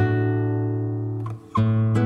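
Solo acoustic guitar playing chords that ring out and slowly fade; the sound drops away briefly, then a new chord is struck about three-quarters of the way through.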